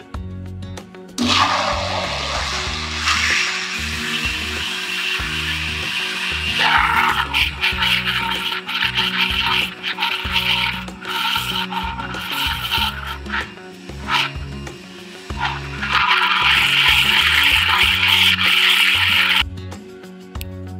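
Countertop blender running, puréeing diced potatoes with milk, eggs and oil into a thin batter while flour is added. The motor starts about a second in, its sound shifts and dips briefly several times, and it cuts off shortly before the end.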